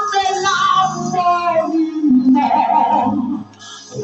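A small vocal group singing a gospel song together in close harmony, with a brief break between phrases shortly before the end.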